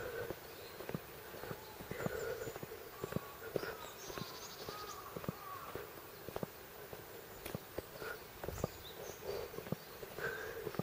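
Footsteps on a wet paved road while walking, about two steps a second, with faint outdoor chirping in the background.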